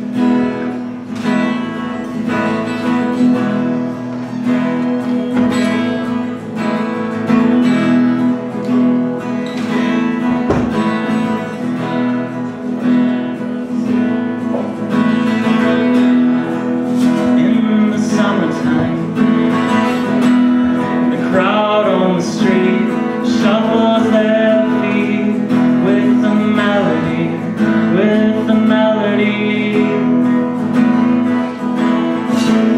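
Acoustic guitar strumming a steady instrumental intro, chords ringing with an even rhythm.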